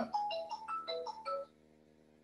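A phone ringtone playing a quick melody of short, pitched notes, about five a second, that cuts off abruptly about one and a half seconds in.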